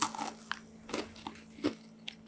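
A crunchy gluten-free salted cracker bitten and chewed right at a small clip-on microphone held to the mouth. There is a loud crunch at the bite, then several quieter crunches about every half second as it is chewed.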